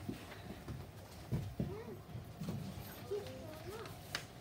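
Scattered, quiet children's voices and shuffling movement, with a couple of soft thumps a little over a second in.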